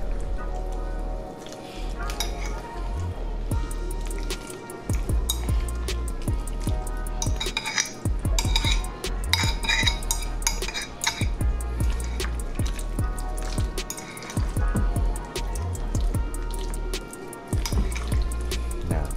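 A fork stirring potato salad in a glass bowl, with repeated short clinks and scrapes of metal on glass, over background music with a deep bass.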